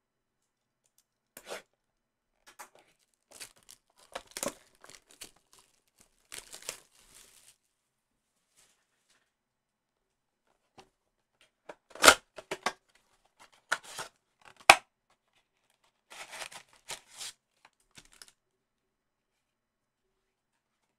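A cardboard trading-card blaster box being torn open by hand: clusters of short tearing and crinkling bursts, with two sharp loud rips just past the middle. Near the end, foil packs are slid out of the box's paperboard inner box.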